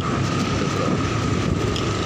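Motorcycle riding along with its engine running steadily, a steady high whine over dense low rumble and wind noise on the microphone.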